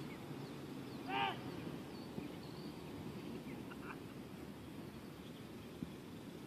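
Quiet outdoor ambience with a low steady rumble. About a second in comes one short bird call, the loudest sound, followed by a few fainter chirps.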